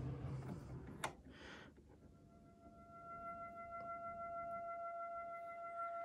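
Buchla 200 modular synthesizer: a soft hiss of its noise patch dies away, a click comes about a second in, then a steady pure oscillator tone with a few faint overtones fades in and holds.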